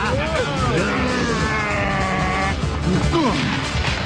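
Cartoon fight soundtrack: dramatic background music mixed with action sound effects and short wordless vocal grunts. A held, slightly rising tone from about one second in to about two and a half seconds.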